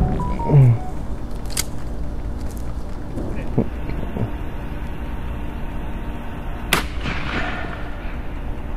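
A man laughs at the start, then a 12-gauge shotgun fires a slug about three-quarters of the way through: one sharp crack followed by a rolling echo.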